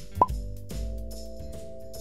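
A short rising pop sound effect shortly after the start, marking a red answer circle popping up on the puzzle picture, over light background music with steady held notes and soft ticking percussion.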